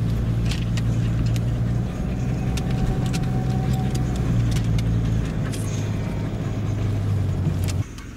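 Car cabin noise as the car drives: a steady low engine and road hum, with scattered light taps of rain on the car. The hum cuts off suddenly near the end.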